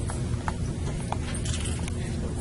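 Steady background rumble of a large hall with a few scattered light clicks or taps.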